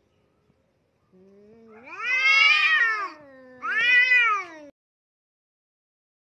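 Domestic cat yowling at another cat in a face-off: a low moan swells into a loud wail that rises and falls, sinks back to a low moan, then a second shorter wail. The sound cuts off abruptly.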